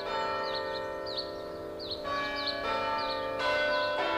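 Church bells ringing, several bells struck one after another, each note ringing on and overlapping the others.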